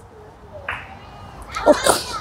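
A woman crying: a short quiet catch of breath about a third of the way in, then a louder sob near the end.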